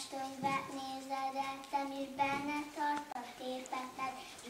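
A young girl singing a song on her own, a tune of held notes stepping up and down.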